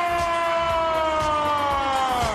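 A long siren-like held tone in a wrestler's entrance music, sliding slowly down in pitch, with a low rumble underneath.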